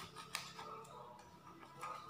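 Faint clicks of a knife against a metal baking tray as glazed cinnamon rolls are cut in it, with one sharper tick about a third of a second in, over a faint steady hum.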